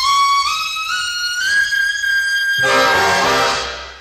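A jazz big-band trumpet climbs note by note into the extreme high register and holds a screaming top note. Other horns then come in with a short, full chord that fades near the end.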